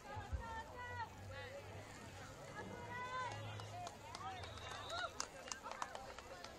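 Distant, unclear voices of people at a football game calling out during a play. A few sharp clicks come near the end.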